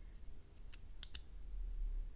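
Small hard clicks of plastic being handled as a tiny FPV camera is pressed into a plastic whoop canopy mount: three clicks about a second in, the last two close together and loudest.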